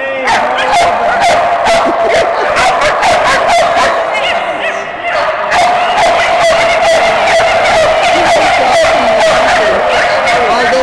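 Dogs barking rapidly, many sharp barks a second with hardly a break, over a steady high tone that runs on underneath.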